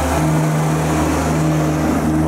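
Engine of the Main Street omnibus, an open-top double-decker replica bus, running with a steady low hum as it drives slowly past close by.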